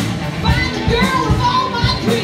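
Live band music: a woman singing into a microphone over electric bass and drums, with a steady beat. Her voice comes in about half a second in.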